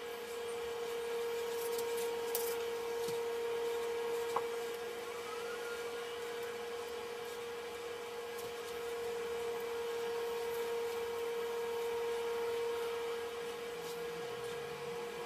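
A steady hum on one even, mid-pitched tone, with a few faint clicks.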